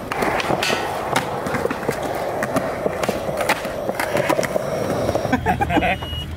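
Skateboard wheels rolling over rough asphalt: a steady grinding rumble with scattered clicks and clacks, which breaks off about five seconds in.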